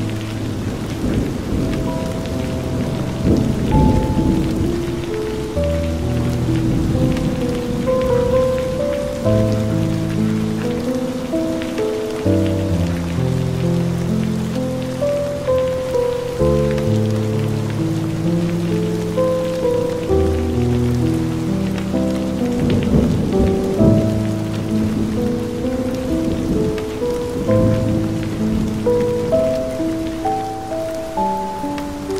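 Slow, soft music of long held notes laid over steady rain, with low rolls of thunder near the start and again a little past the middle.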